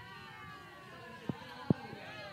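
High-pitched, drawn-out voices of young children, wavering up and down in pitch, with two short knocks a little past halfway.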